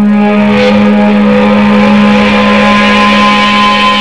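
Live rock music: sustained electric guitar notes held over a steady low drone, with a noisy swell rising about half a second in.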